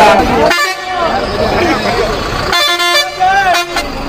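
A coach's horn sounding two short, steady blasts about two seconds apart, with people talking around it.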